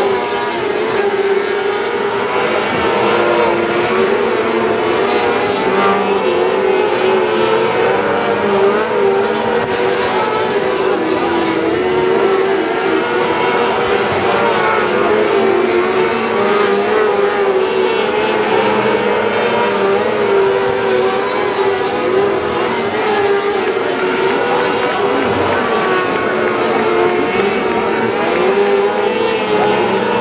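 A field of Super 600 micro sprint cars racing on a dirt oval, their high-revving 600cc motorcycle engines running together in a loud, continuous engine note whose pitch wavers up and down.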